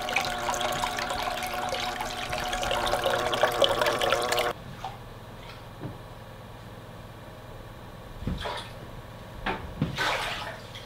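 Water from a filter hose running and splashing into a plastic tote livewell, over a steady motor hum; it cuts off suddenly about four and a half seconds in to a quieter hum with a couple of soft knocks near the end.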